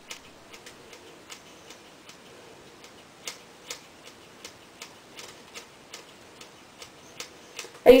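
Scissors snipping bit by bit through wet bangs: a run of small, sharp snips at about two to three a second.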